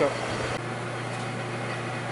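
Metal lathe running steadily with a low, even hum.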